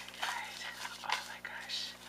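A woman's quiet, breathy whispering to herself, with a few faint clicks.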